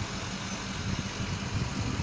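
Steady low rumble and hiss of street traffic.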